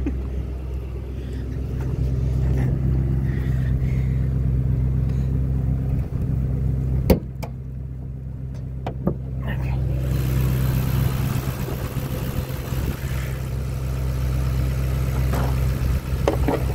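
2010 Mustang GT's 4.6-litre V8 idling steadily. Sharp clacks about seven and nine seconds in, and a few more near the end, as the hood is opened and propped up.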